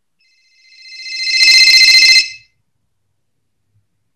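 A phone ringtone ringing once: several steady high pitches swell louder over about a second and cut off about two and a half seconds in.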